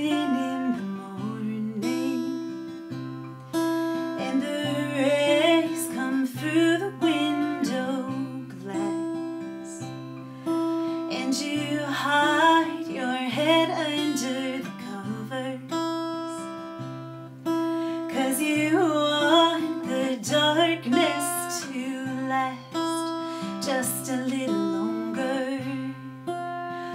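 Steel-string acoustic guitar strummed and picked in a steady rhythm, with a woman singing in several phrases over it.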